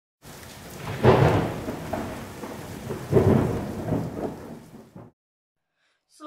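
Thunder rumbling over rain, with two loud rolls, about a second in and about three seconds in, cutting off suddenly about five seconds in.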